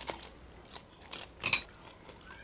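Crunching bites into a hard, crisp sushi waffle of waffle-pressed rice, a few short cracks with the loudest about a second and a half in.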